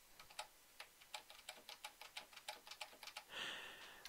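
Faint computer keyboard keystrokes: a quick run of light taps, several a second, while text is edited, with a brief soft hiss just before the end.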